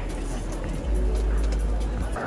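Music through an arena PA system at a live rock concert, with a deep steady bass note that swells about a second in.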